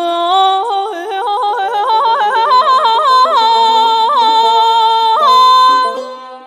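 Female vocalist singing Persian classical āvāz in Bayat-e Esfahan, with tahrir: a run of quick yodel-like breaks in pitch that climbs step by step, then a few longer held notes before the phrase fades out near the end.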